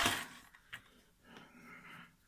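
Faint handling sounds of a small lock part being picked up off the bench: one light click, then soft rubbing near the end.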